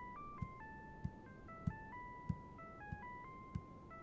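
A telephone's electronic hold melody: a simple tune of clean beeping notes in two parts, playing softly while the call waits on hold. Under it, about six soft footsteps on wooden stairs and floor, evenly paced.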